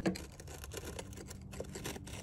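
Faint scattered clicks and light scratching as a serrated knife blade works at a dried mud wasp nest.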